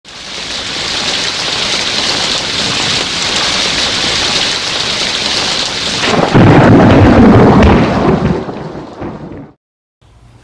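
Steady heavy rain, then about six seconds in a loud thunderclap that rumbles for about two seconds and dies away; the sound cuts off abruptly near the end.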